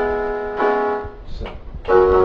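Electronic keyboard on a piano voice: the chord G-sharp, B, E struck at the start, struck again about half a second later and held, then a louder, fuller two-handed chord near the end.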